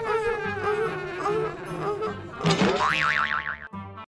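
Cartoon sound effects over light background music: a wavering pitched tone runs through most of the clip, then a rising glide turns into a fast warble about two and a half seconds in.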